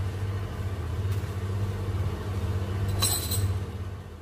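A steady low hum from a running kitchen appliance, fading out near the end, with a brief high clink about three seconds in.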